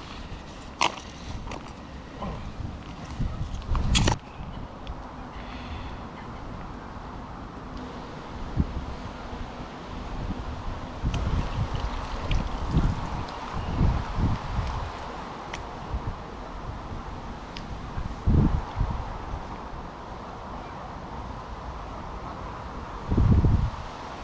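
A couple of sharp plastic clicks from a lure box being handled and closed in the first few seconds, then wind buffeting the microphone and handling thumps over a steady hiss.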